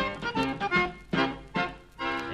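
Instrumental introduction on accordion: a string of short, separate notes with brief gaps between them.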